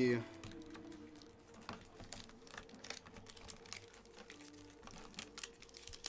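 Light, irregular clicks and taps at a low level over a faint steady hum.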